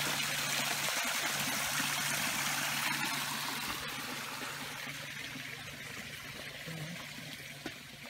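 Small garden rock waterfall trickling and splashing, loudest at first and fading slowly as the view moves away from it. A steady low hum runs underneath.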